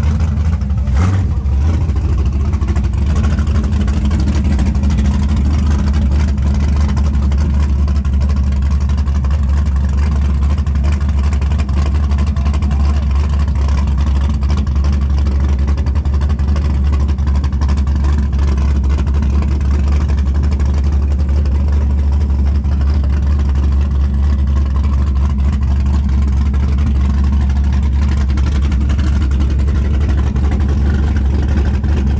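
A car engine idling close by: a loud, steady low rumble that never changes pitch or level, with no revving.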